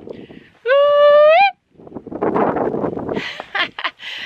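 A woman's high, held whoop of just under a second that rises in pitch at the end, followed by laughter.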